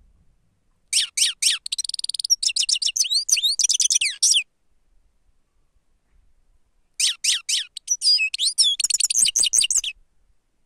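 Grey-headed goldfinch singing: two fast twittering phrases of high notes and trills, the first starting about a second in with a buzzy stretch in it, the second starting about seven seconds in.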